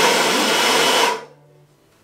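Cordless electric blower giving a loud, steady blast of air that cuts off about a second in, blowing moisture and gnats out of freshly cleaned skulls.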